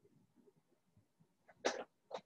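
Near silence with a faint low murmur, then one short, loud burst of breath-like sound from a person near the end.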